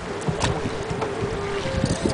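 Wind rumbling on the microphone over open water, with a soft, steady clarinet note held underneath. A light click comes about half a second in.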